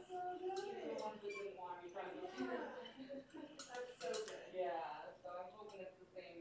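Speech: voices talking, with no words made out clearly.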